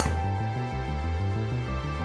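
Background music with a steady beat. Right at the start, one sharp click of a driver striking a two-piece Wilson Duo soft golf ball off a tee.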